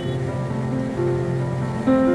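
Instrumental background music with held notes that change pitch every half second or so, getting louder near the end.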